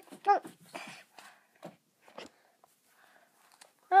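A child shouts "no!", then plush toys and cloth rub and scrape against the handheld camera's microphone in a few short rustles before it goes quiet.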